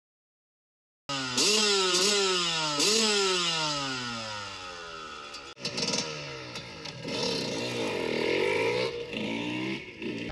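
Motorcycle engine, starting about a second in with three quick revs, each pitch jumping up and sliding down, then winding down slowly; after a short break about halfway, it runs again with its pitch rising and falling.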